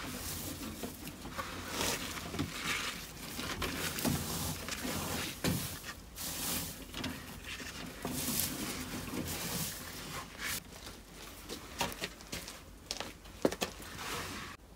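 Hands digging into loose wood-shavings bedding and working the stem of a small evergreen tree into it: irregular rustling and crunching of the shavings, with branches brushing, and a few sharp clicks near the end.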